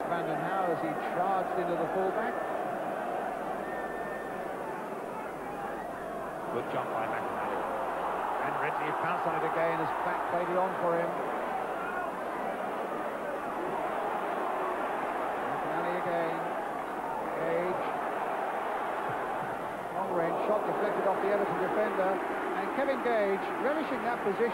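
Football stadium crowd: a steady din of many voices, with singing and chanting among the terraces. It grows louder about twenty seconds in.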